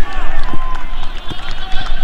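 Several people's voices calling out loudly across an open pitch, one call drawn out near the middle, over a steady low rumble.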